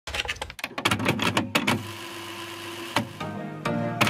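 Typewriter-style keystroke sound effect: a quick run of sharp clicks, about eight a second, for the first second and a half. Then a held tone, one stroke about three seconds in, and background music begins.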